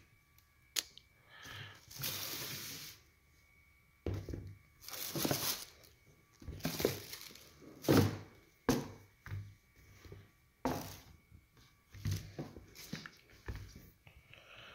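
Handling noise of sneakers being unboxed: a dozen or so separate bursts of rustling paper and cardboard and thunks as the shoes are lifted out and set down on a table, the loudest thunk about eight seconds in.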